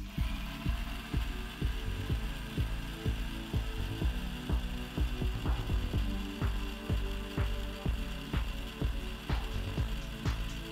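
Electric mixer grinder switched on and grinding ragi grains, its motor whine rising briefly as it spins up and then running steadily. Background music with a steady beat plays throughout.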